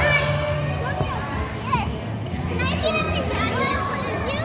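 Children shouting and calling out as they play, over background music with a steady low bass line.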